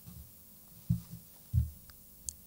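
Soft, irregular low thumps picked up by a close stage microphone, about five in two seconds, the strongest about one second and one and a half seconds in.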